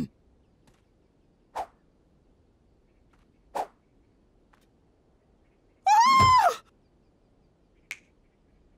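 A woman's loud, high-pitched cartoon yelp about six seconds in, held briefly and then falling in pitch, as she is knocked to the ground. Before it come two short, faint sounds.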